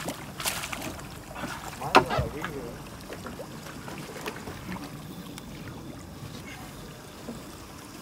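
Low, steady noise of water and wind beside a boat's hull at sea, with a short voice about two seconds in.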